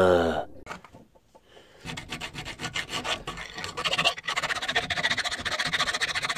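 A short comic voice saying 'uhhh' with a falling pitch opens the clip. Then, from about two seconds in, a flat hand file rasps on a steel hammer head held in a bench vise, in a long run of quick, even strokes.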